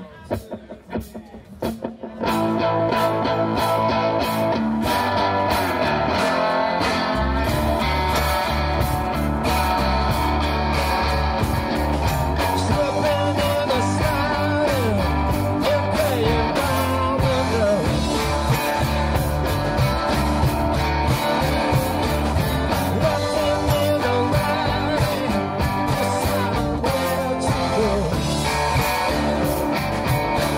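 Live rock band playing with electric guitars, bass guitar, mandolin and drums. After a few sparse clicks, the full band comes in together about two seconds in, and the bass grows heavier a few seconds later.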